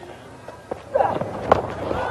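Cricket bat striking the ball with a single sharp crack about one and a half seconds in as the batsman pulls, over open-stadium field noise with brief voices just before.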